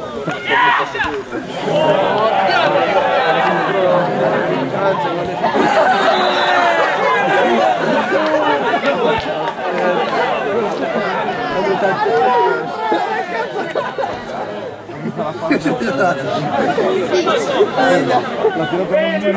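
Several people chatting over one another close to the microphone, a steady stream of overlapping conversation with no single clear voice, briefly dropping off about fifteen seconds in.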